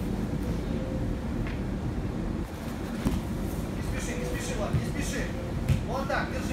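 Indistinct voices over a steady low rumble of room noise, with a faint constant hum and a few short louder knocks in the second half.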